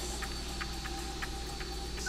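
Countdown ticking from the game show's sound bed: quick, even ticks about five a second over a steady low hum.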